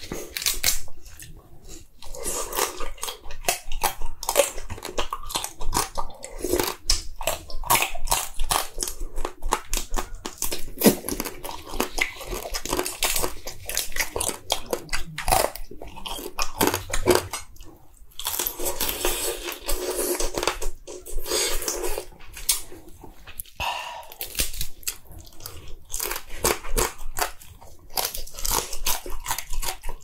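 Close-up chewing and biting of soy-sauce-marinated raw crab (ganjang gejang), a dense, irregular run of crisp crunches as the shell and meat are bitten through.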